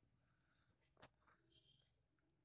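Near silence, broken once about a second in by a faint click of a spatula knocking against the pan as the dish is stirred.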